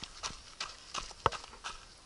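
A runner's footsteps on a dirt trail: a steady beat of short footfalls, about three a second.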